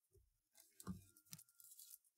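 Near silence with a couple of faint rustles of paper being handled and set down, about a second in and again shortly after.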